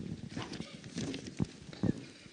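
Faint, scattered clicks and knocks from a handheld microphone being handled and moved, with faint voices in the background.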